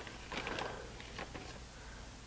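Faint soft rustling and a few light ticks of shredded cheese being dropped by hand onto stuffed peppers in a slow-cooker crock, over a low steady hum.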